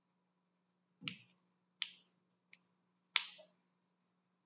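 Finger snaps: four sharp, short snapping clicks at an uneven pace, less than a second apart. The first has a duller thump under it, and the last is the loudest.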